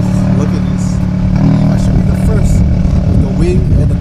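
A car engine idling steadily with a low, constant hum, with faint voices over it.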